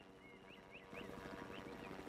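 Faint bird chirps: about five short, rising chirps spread over a couple of seconds against near-quiet background ambience.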